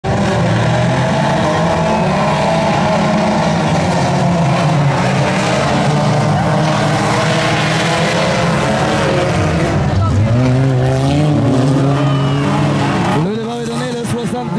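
A pack of old four-cylinder cars racing on a dirt track, many engines running hard together at once, loud and steady. There is a rise in revs about ten seconds in, and the engine noise drops off shortly before the end.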